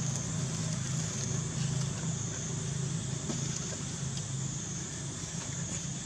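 Steady outdoor background noise: a continuous low hum with a high-pitched drone above it, and no distinct events.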